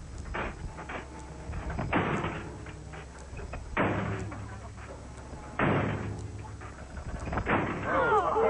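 A seat-belt 'Convincer' crash sled slamming to a sudden stop at the foot of its ramp in a simulated six-mile-an-hour crash: a series of loud thuds about two seconds apart, each dying away over about a second.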